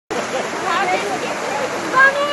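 Muddy floodwater rushing down a street in a steady, loud wash, with people's voices calling over it.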